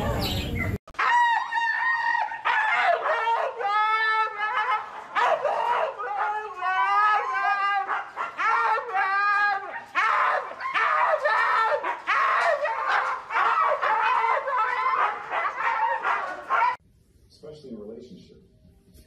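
A husky howling and yowling in a long run of wavering calls, rising and falling in pitch one after another with only short breaks. The calls stop abruptly near the end.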